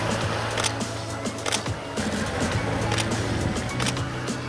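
Background music with a steady beat over a sustained low bass note.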